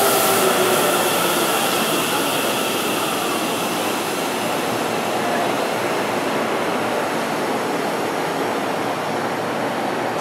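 Electric commuter train braking to a stop at a station platform: the last of its falling motor whine in the first second, then a steady rush of rolling noise that slowly fades as it comes to a standstill.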